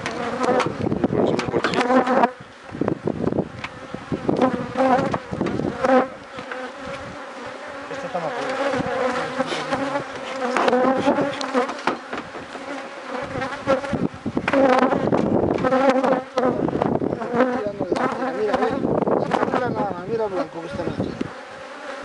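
Honeybees buzzing loudly and continuously close to the microphone at an opened hive, the pitch of the buzz wandering up and down as individual bees come and go.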